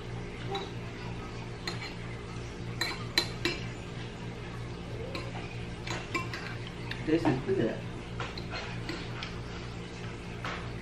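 Metal spoon clinking and scraping against a glass bowl of soup while eating: scattered light clinks, with a quick run of them about three seconds in.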